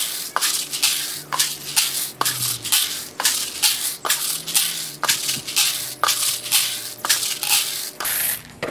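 Freshly roasted coffee beans poured and shaken between two plastic buckets, rattling and swishing in repeated strokes about two to three a second, as they are cooled and their chaff is winnowed off.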